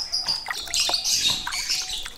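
Water splashing and dripping in a plastic basin as a perkutut (zebra dove) is bathed by hand, with small birds chirping in the background.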